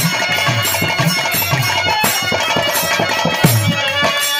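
Instrumental accompaniment of a Bhojpuri birha stage performance with no singing: a sustained, reedy melody over hand-drum beats at about two a second.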